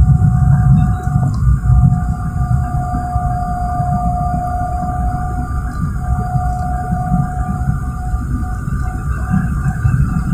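Jet airliner cabin noise in flight: a steady low rumble of engines and airflow, with a thin high whine held over it that breaks off briefly a few times.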